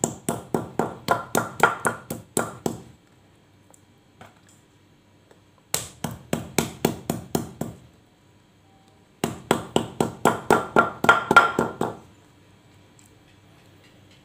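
Stone pestle pounding boiled jengkol beans flat on a stone mortar (cobek, ulekan): three runs of quick knocks, about four a second, with pauses between. The beans have been boiled soft, so each one flattens under the strikes.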